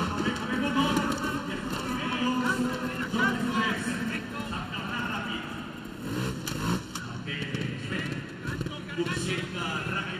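Trials motorcycle engine being blipped and revved as the bike climbs onto cable-spool obstacles, with a sharp rise in revs about six seconds in.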